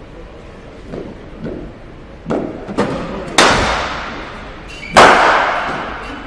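Cricket bat striking the ball: two loud sharp cracks about a second and a half apart, each ringing out for about a second, after a few lighter knocks.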